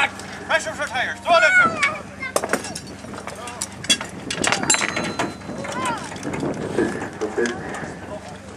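Voices calling out, with scattered sharp metal clinks and knocks of hand tools and steel parts as a Ferguson 20 tractor is being assembled.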